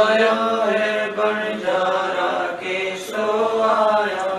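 A woman chanting Hindi devotional verses in a slow sung recitation, holding long notes, with a steady low hum underneath.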